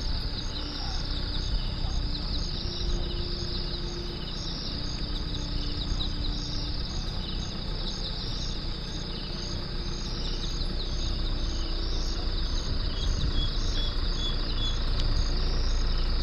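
A steady high-pitched insect chorus pulsing regularly, over the low rumble of a slowly driving vehicle's engine and tyres.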